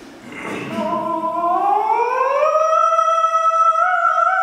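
A single male voice singing a cappella, sliding smoothly up in pitch and then holding a high, sustained note. A short breathy noise comes just before the voice enters.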